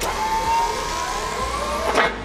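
Electronic sound-design whoosh in a promo soundtrack: a sudden burst of hiss with sliding, siren-like tones, ending on a sharp hit.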